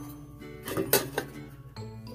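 Background music with light metallic clinks about a second in, from a small square metal camp pot being handled.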